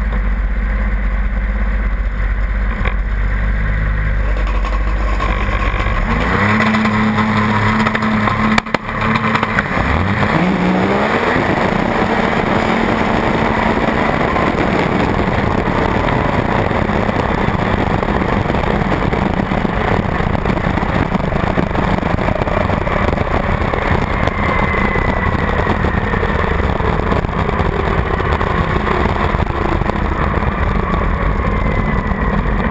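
On-board sound of a turbocharged 1200 cc four-stroke Ski-Doo drag sled. It runs low and steady at first, then revs up about six seconds in, with a sharp break near nine seconds. It then runs hard with dense rushing wind noise, and near the end a whine falls in pitch as the sled slows.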